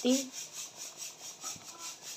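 Faint steady hiss of a pot of chole simmering on a gas stove, with a couple of very faint small ticks.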